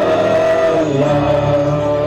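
Gospel worship music with a voice singing long held notes, the pitch stepping down about a second in.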